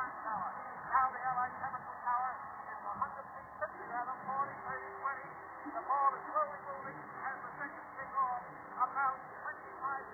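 Muffled, narrow-band speech from an old broadcast recording playing through a computer's speakers and picked up across the room.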